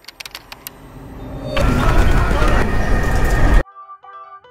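A quick run of camera-shutter clicks, then a Lamborghini's engine revving loud, building up and cut off suddenly near the end.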